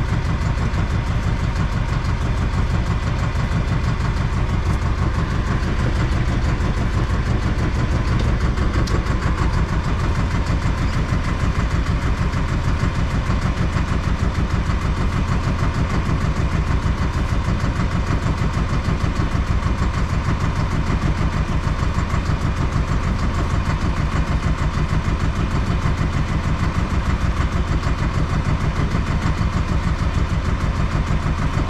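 Fishing boat's engine running steadily, a constant low throb, while the longline is set.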